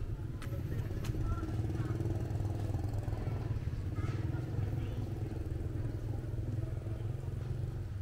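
A motor vehicle engine, most likely a motorcycle, running nearby with a steady low rumble that swells a little in the middle, with faint voices in the background.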